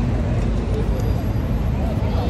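Steady city road-traffic noise, heaviest at the low end, with faint voices of passers-by.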